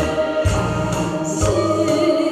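A woman singing through a microphone and PA, holding a long wavering note, over an instrumental accompaniment with a low bass beat about once a second.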